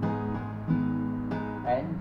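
Steel-string acoustic guitar strummed with a capo at the fourth fret: three strummed chords about two-thirds of a second apart, each left ringing into the next.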